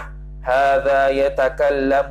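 A man's voice intoning Arabic text in a drawn-out, chant-like recitation with long held notes, starting about half a second in, over a steady low hum.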